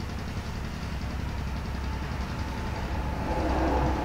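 A steady low background hum, growing slightly louder near the end.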